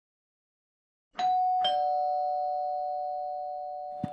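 Two-note "ding-dong" doorbell chime: two strikes about a second in, each leaving a steady ringing tone that fades slowly.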